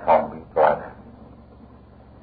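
Two short voice-like calls about half a second apart, then only a low hiss on the recording.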